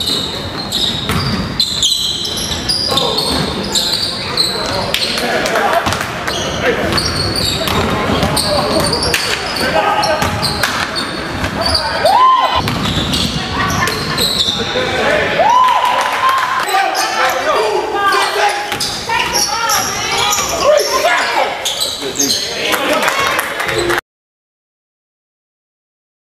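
Live basketball game sound in a gym: a ball bouncing on the court floor amid players' and spectators' voices, echoing in the large hall.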